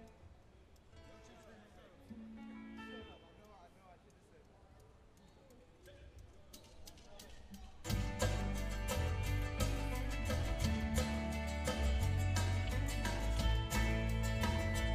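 Live country band with banjo, acoustic and electric guitars, bass and drums beginning a song. Faint scattered instrument notes give way, about eight seconds in, to the full band coming in loud with a steady drum beat.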